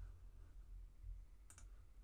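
Computer mouse button clicked twice in quick succession about one and a half seconds in, over a faint low steady hum.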